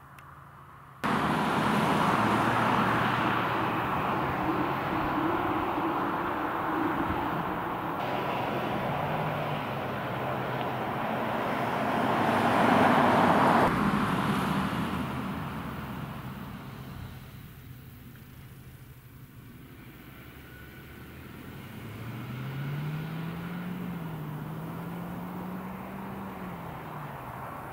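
Renault Austral mild-hybrid SUV with a 1.3-litre four-cylinder petrol engine driving past: tyre and engine noise builds to its loudest about 13 seconds in, cuts off sharply and fades as the car pulls away. Near the end a faint engine note rises and wavers as it accelerates into the distance.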